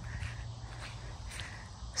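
Faint footsteps on grass over a low, steady outdoor rumble.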